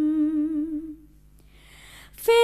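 A woman humming a long held note with closed lips, with a gentle vibrato, fading out about a second in. A soft breath follows before the next sung phrase.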